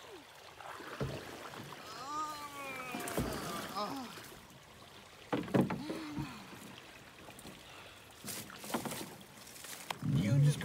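Canoe hull scraping and bumping through a tangle of dead branches, with rough rustling and a few sharp cracks of twigs.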